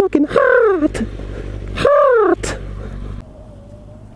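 Two loud crow caws, each rising then falling in pitch, over the low hum of an idling motorcycle engine that drops away about three seconds in.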